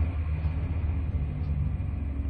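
Steady low rumble of an idling truck engine, heard inside the sleeper cab.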